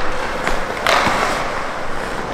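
Hockey skates carving across rink ice, with a click of the stick on the puck and a louder skate scrape about a second in.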